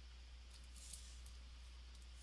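Near silence: a steady low hum of room tone, with a few faint, brief high scratchy sounds about half a second to a second in.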